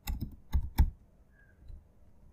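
Laptop keyboard being typed on: a quick run of about five keystrokes in the first second, then it stops.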